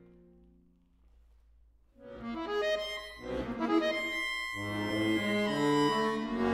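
Solo accordion music. A low held chord dies away over the first second, then comes about a second of near silence. The instrument then re-enters suddenly and loudly with fast, dense chords spread over high and low registers.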